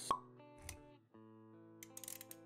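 Intro sound design over music: a sharp pop just after the start, a smaller blip about half a second later, then sustained musical notes from about a second in, with light clicks near the end.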